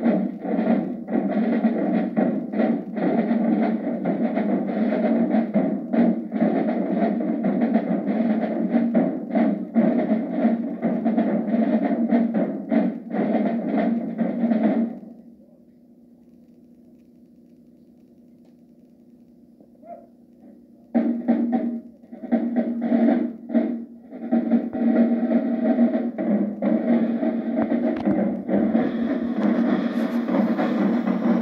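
Marching drumline of snare and bass drums playing a fast cadence of dense, sharp strokes, which stops about halfway through. A few seconds of faint hum follow, then the drumming starts again, with cymbals joining near the end.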